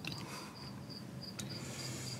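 Crickets chirping steadily in a high, evenly pulsed trill, about four to five chirps a second. A faint click comes about one and a half seconds in.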